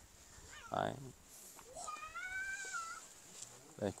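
A single drawn-out animal call about a second long, rising and then falling in pitch. A fainter, shorter call comes just before it.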